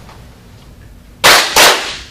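The kneeling class clapping twice together, two sharp claps about a third of a second apart with a short ring from the room, as part of the ceremonial closing bow of an aikido class.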